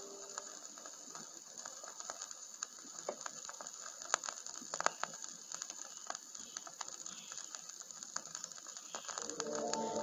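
Vinyl LP surface noise in the silent band between two tracks: a faint steady hiss with scattered crackles and pops. The next song's music comes in near the end.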